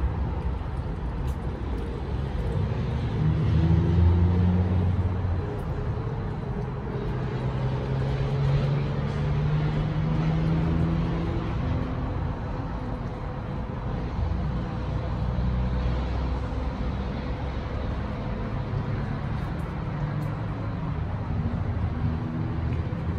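Road traffic noise: a steady low rumble of passing vehicles, with engine drones swelling and fading, loudest about four seconds in and again around ten seconds in, over a faint steady hum.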